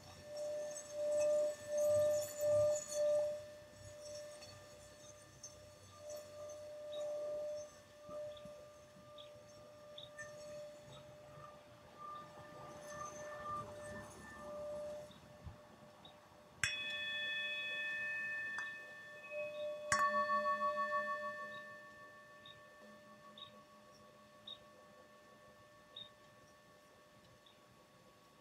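Tibetan singing bowls ringing: a pulsing, wavering tone in the first few seconds, then two sharp strikes about three seconds apart, past the middle, each leaving long ringing tones that fade slowly.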